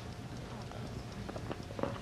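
A few sparse light knocks and clicks over a steady low background hum, the loudest a little before the end.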